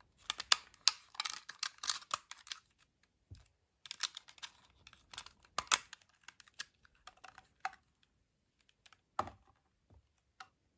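Small hard clear-plastic accessory box from a Barbie Pop Reveal set being handled and pulled open, with a quick run of sharp plastic clicks and scratchy rustles, then more scattered clicks. A single duller knock comes near the end.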